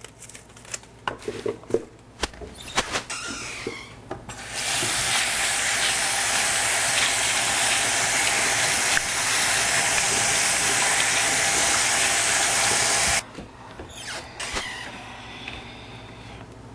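Kitchen faucet running a steady stream of water into a sink over bunches of radishes, turned on about four seconds in and shut off suddenly some nine seconds later. Before and after, scattered light clicks and rustles as the wet radish bunches are handled.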